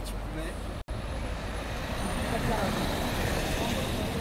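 Street ambience: passers-by talking and a motor vehicle approaching, its noise swelling from about two seconds in. The sound drops out for an instant just under a second in.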